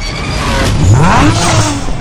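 A motor vehicle engine revving hard, its pitch climbing sharply and then falling away.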